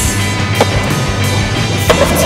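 Rock soundtrack music playing over skateboard sounds: a knock of the board on concrete about half a second in, then a louder slap of the skateboard landing on concrete near the end.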